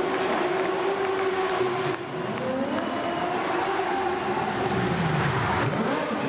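Racing sidecar engines running at low speed, several at once, with their pitch rising and falling as the throttles are worked. Near the end one outfit's engine swoops down and back up as it passes close by.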